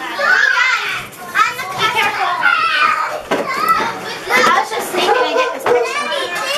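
Several children talking and calling out at once, their high voices overlapping.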